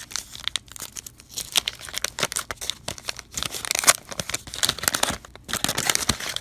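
Wax-paper wrapper of a 1987 Topps baseball card pack being torn open and peeled off the cards: a dense, irregular run of crackling and tearing, loudest a little before the four-second mark.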